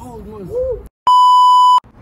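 A censor bleep: a loud, steady electronic beep of under a second, switching on and off abruptly about halfway in, just after a brief dropout to silence. It is preceded by a short, sing-song stretch of a young man's voice.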